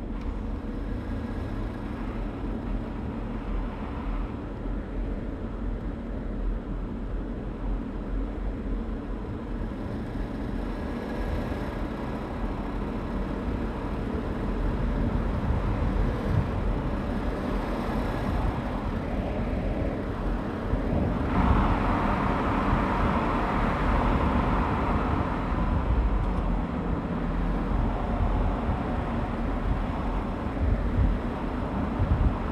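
Audi A8-series sedan driving on a road: steady engine and tyre noise that grows louder about two-thirds of the way through.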